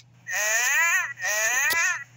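1999 Autumn Furby talking in its electronic creature voice: two short warbling calls that rise and fall in pitch. A sharp click comes near the end of the second call as a finger presses its tongue to feed it.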